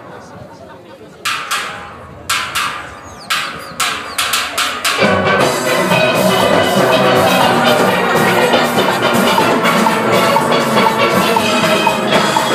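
A few sharp percussive clicks, spaced at first and then quickening, count a steel orchestra in. About five seconds in the full band of steel pans with drum kit comes in and plays on at full volume.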